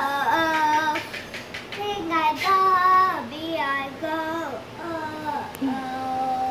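A young girl singing alone with no accompaniment: short phrases that slide up and down between notes, ending on a long held note.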